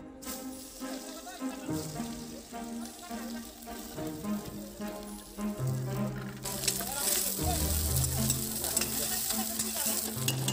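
Sliced onions sizzling as they fry in hot oil in a large kadai. The sizzle grows louder about six and a half seconds in, and a steel ladle stirs them near the end.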